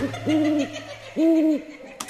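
Two owl hoots about a second apart, each rising, holding and then falling in pitch.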